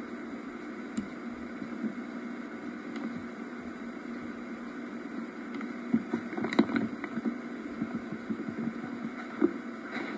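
Steady hiss and hum of old camcorder videotape audio, with a few light clicks and knocks about six to seven seconds in and again near the end.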